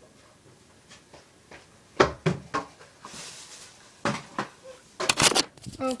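Handling noise: a run of sharp knocks and clatter with a brief rustle, starting about two seconds in, as the recording phone is picked up and moved.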